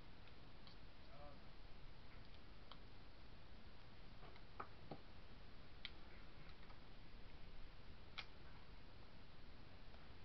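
Faint handling of paper and card by hand: a few light, irregular clicks and ticks over a steady low hiss.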